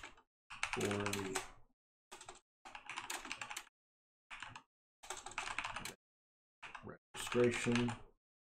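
Typing on a computer keyboard in short runs of keystrokes with dead silence between them. A voice murmurs briefly twice, about a second in and near the end.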